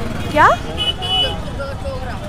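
Busy street-market background noise with a single short spoken question, and a brief high vehicle-horn toot about a second in.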